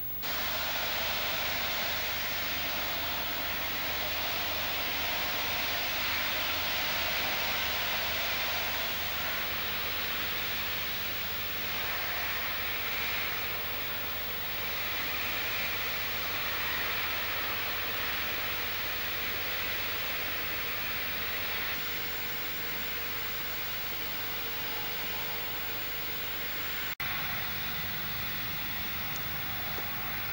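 Steady, loud hiss of a high-pressure blast-cleaning jet working on the viaduct's steel lattice girders, with a faint low hum beneath. It breaks with a click near the end.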